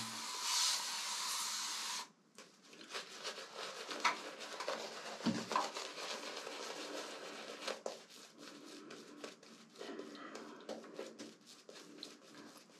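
Running water hisses for about two seconds and cuts off, then a Razorock Lupo double-edge safety razor with a Gillette 7 O'Clock Super Platinum blade scrapes through lathered stubble in many short, scratchy strokes.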